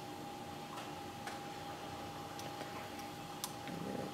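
A few faint, sparse ticks from handling the thread bobbin at a fly-tying vise while thread is wrapped onto the hook, over a steady faint high hum.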